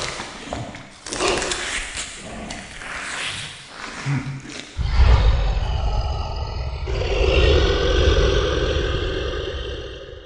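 Trailer sound effects of zombies snarling and roaring, dense and irregular. About five seconds in a deep low boom hits and carries on as a heavy rumble, fading near the end.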